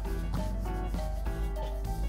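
Hands kneading bread dough, the dough pressed and rubbed against a floured silicone mat, heard over background music with a steady deep bass.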